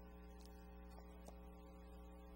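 Near silence: room tone with a steady low hum and a couple of faint clicks.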